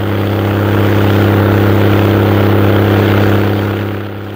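Rotary snow blower working through deep snow: a steady engine drone under load, with the rushing of snow being cut by the rotor and blown out of the chute.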